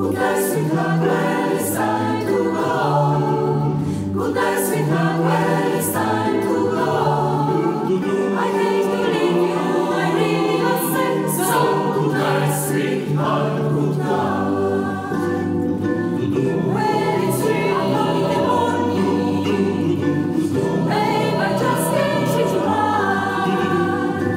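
Mixed choir singing in close harmony, with the women's voices to the fore, over sustained low bass notes and a piano accompaniment.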